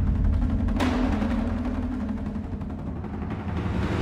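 Cinematic trailer percussion from the Damage 2 drum library playing back: heavy low drum hits over a deep rumble, a big hit about a second in with a low tone that fades out, and another hit swelling up near the end.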